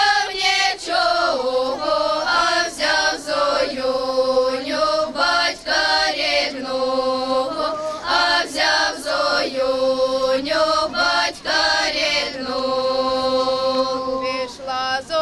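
Female folk ensemble singing a Ukrainian folk song unaccompanied, several voices in harmony on long held notes.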